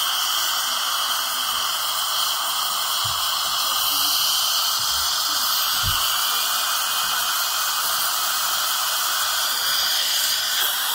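Dental high-volume suction tip held in a patient's mouth, hissing steadily as it draws air and saliva.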